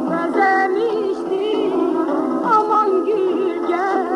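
Azerbaijani folk song on an old archival recording: a female singer's ornamented melody, wavering and curling in pitch, with instrumental accompaniment.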